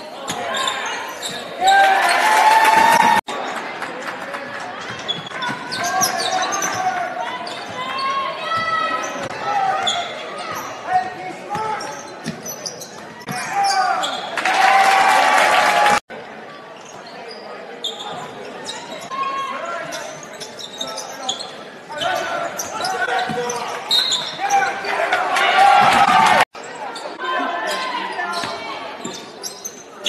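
Live basketball game in a gymnasium: spectators' voices and shouts over a basketball bouncing on the hardwood court, with the crowd noise swelling loudly several times. The sound breaks off abruptly three times where short clips are joined.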